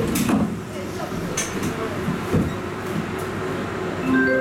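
Interior of a Tatra T3 tram moving off slowly from a stop: a low running rumble with a few separate clicks and knocks.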